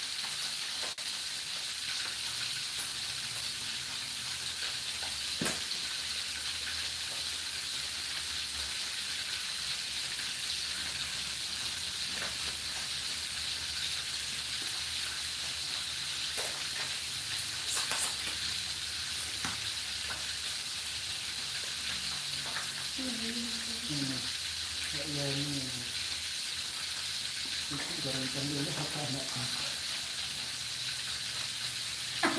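Whole catfish deep-frying in hot oil in an aluminium wok: a steady sizzle, with a few sharp pops.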